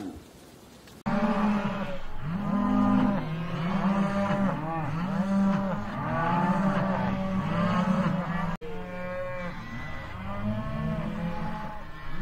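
Cattle mooing: a dense run of long, overlapping moos begins about a second in. It breaks off sharply for an instant about eight and a half seconds in, and more moos follow.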